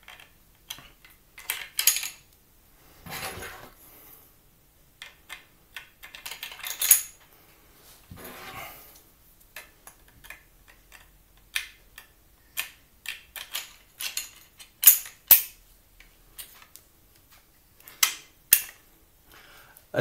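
Crossbow bolts being pushed into the Adderini crossbow's magazine, a little tight because it is new: a run of irregular sharp clicks and clacks with a few short scraping slides, the loudest clicks in the second half.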